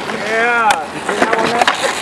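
Skateboard wheels rolling on concrete, with a few sharp clicks from the board. A single voice calls out with a pitch that rises and falls in the first moment.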